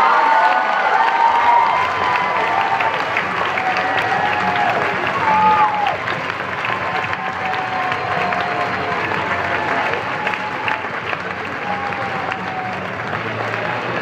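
A large audience applauding steadily, with voices calling out and cheering over the clapping. It is strongest in the first couple of seconds, then holds on.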